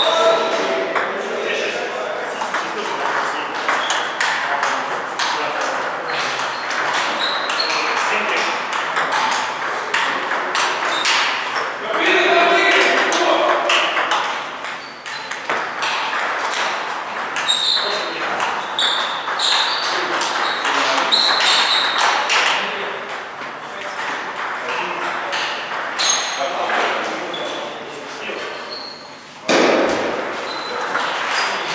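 Table tennis ball clicking off bats and the table in rallies of quick hits, with short pauses between points.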